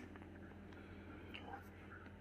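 Near silence: faint room tone with a low steady hum.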